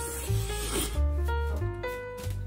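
Background music with a jazzy bass line, and in the first second a short, noisy slurp of ramen noodles.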